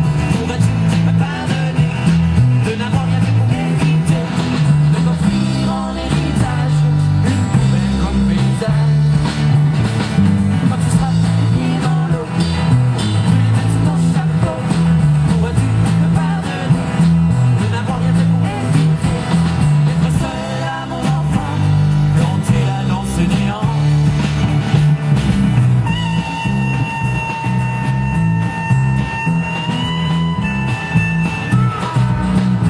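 Live rock band playing with drums, bass and acoustic and electric guitars, a harmonica playing over them. About four seconds before the end the harmonica holds one long note.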